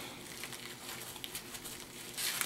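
Faint crinkling of plastic wrap and rustling of a bamboo sushi mat as a sushi roll is rolled forward in it.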